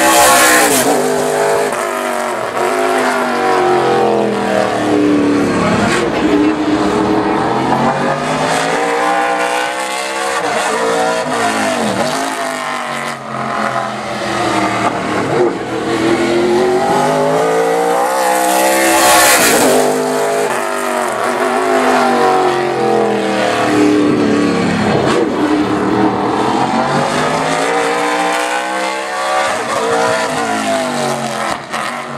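V8 engine of the No. 02 2010 Ford Fusion NASCAR Canadian Tire Series stock car running hot laps on an oval. The engine pitch climbs and falls over and over as the car accelerates down the straights and lifts into the turns. It passes close by twice, loudest at the very start and again about 19 seconds in.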